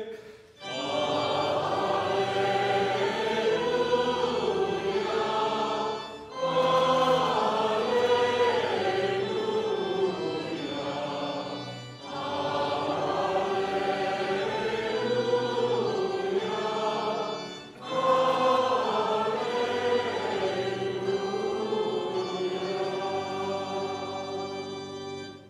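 Choir and congregation singing the Gospel acclamation of a Catholic Mass over steady low held notes, in four phrases of about six seconds each with a short break between them.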